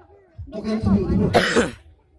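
A person close to the microphone voicing and coughing, with one harsh cough about a second and a half in.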